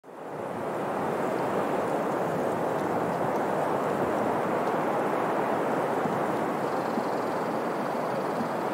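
A steady rushing noise, like wind or surf, fading in over the first second and holding even, with no tune or tones.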